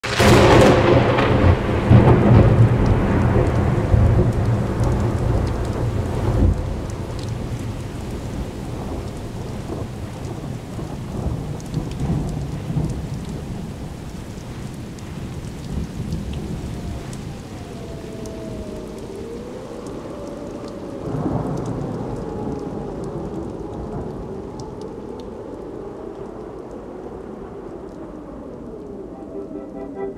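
Thunderstorm: a loud rumble of thunder at the start that fades over about six seconds, steady rain throughout, and another rumble a little past twenty seconds, with faint wavering tones behind it in the second half.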